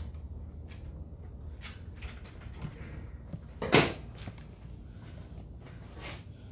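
A few faint clicks and one louder, short knock about two-thirds of the way in, over a low steady hum: kitchen utensils or containers being handled on a work surface.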